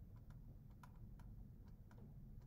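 Faint light taps and clicks of a stylus on a tablet screen during handwriting: about six short ticks over a low room hum, near silence overall.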